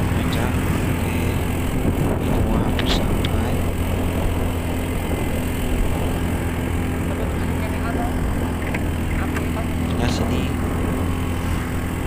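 Steady engine drone mixed with wind rush, heard on board a moving vehicle, with a few faint knocks.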